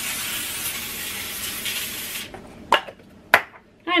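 Aerosol cooking spray hissing steadily for about two seconds as foil is coated, then cutting off, followed by two short clicks.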